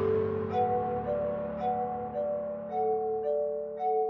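Soft background music: a slow melody of single ringing, bell-like notes, about two a second, over a fading low accompaniment.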